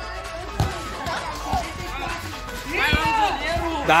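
A futsal ball kicked and bouncing on a concrete court: a few dull thuds, under background music and voices.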